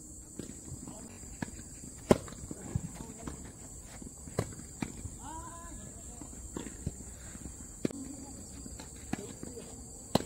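Tennis balls being hit with rackets and bouncing on a hard court: sharp, hollow pops every second or two, the loudest about two seconds in. A short shouted call comes around the middle, over a steady high hum.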